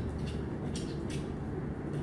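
Fettling knife scraping the rough edges of a freshly cast plaster stamp in a few short, faint strokes, over a low steady hum.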